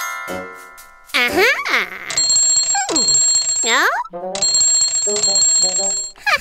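Cartoon soundtrack: music with bell-like high ringing tones and swooping rising-and-falling pitch glides, along with a character's wordless vocal sounds.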